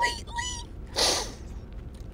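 A person's voice making two short, high-pitched whimpering sounds, followed about a second in by a brief breathy hiss.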